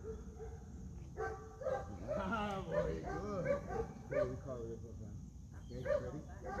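Young Airedale terrier giving a string of short, high-pitched barks and whines during bite work, starting about a second in, with a few more near the end.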